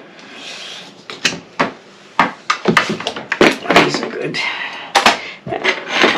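Small tools and craft supplies clicking and clattering as they are handled and dropped into a toolbox: a run of sharp knocks with some rustling between them.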